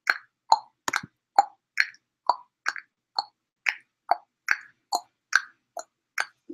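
A string of about a dozen short, hollow pops, roughly two a second, each a little higher or lower in pitch than the last.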